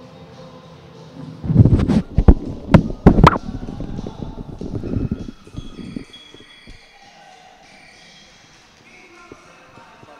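Ice hockey play sounds: a loud cluster of knocks and thuds starting about a second and a half in, with four sharp cracks of stick and puck within about two seconds, dying away by about six seconds.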